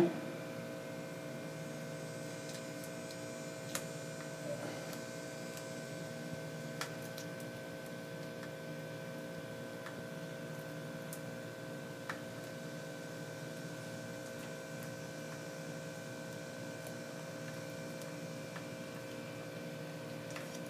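A steady hum made of several held tones, with a few faint clicks.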